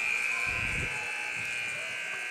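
Arena end-of-period horn sounding one steady buzzing tone, signalling the end of the third quarter of a box lacrosse game.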